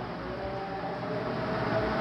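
Steady background noise, a rumble and hiss with a faint steady hum, slowly growing a little louder.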